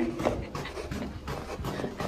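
Rapid panting breaths, quieter than the shouting around them.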